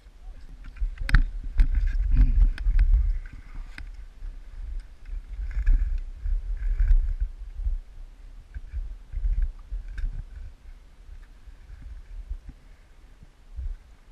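Thin sea ice cracking and breaking up, with a run of sharp cracks and crunches in the first few seconds and scattered ones later. Water sloshes, and a heavy rumble of wind and movement hits the microphone.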